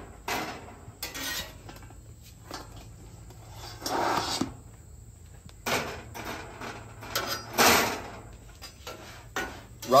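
A metal spatula scraping and clattering on a steel griddle top as pizzas are slid across it, in several separate scrapes. The longest comes about four seconds in and the loudest just before eight seconds.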